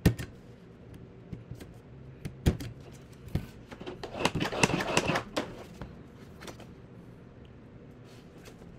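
A long-reach stapler clacks shut, driving a staple through the spine of a folded paper chapbook, followed by a couple of lighter knocks and a burst of paper handling and rustling from about four to five and a half seconds in.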